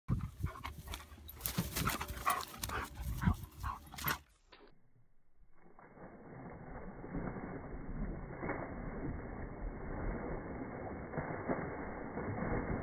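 A dog running through long dry grass: quick, irregular crackling of grass and footfalls for about four seconds. Then, after a brief drop, a muffled rushing that slowly grows louder.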